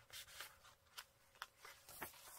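Near silence, with a few faint, short rustles and taps of paper and card being handled as a journal page is turned.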